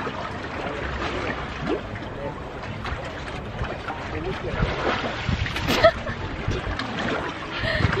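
Seawater sloshing and lapping around a shallow rocky shore and swim ladder as a swimmer surfaces, with splashing as he rises. A brief sharp sound stands out about six seconds in.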